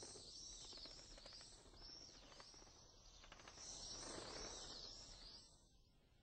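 Faint ambience of small birds chirping: quick, high, arched chirps repeating in a steady run, a little louder near the start and again past the middle.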